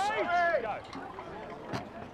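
A man's match commentary that stops under a second in, followed by low background noise from the ground with a faint click near the end.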